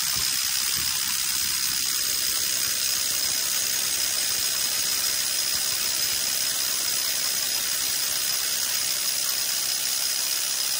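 Power drill boring a bit through a lift base plate's anchor hole into the concrete floor, running steadily with a high-pitched whine over a constant hiss.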